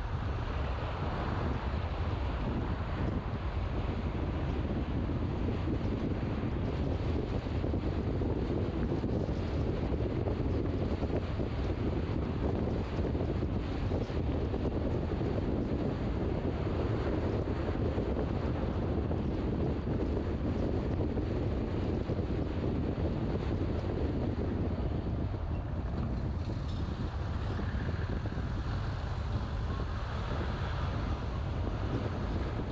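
Steady road and wind noise of a car driving at moderate speed, a low, even rush with wind on the microphone.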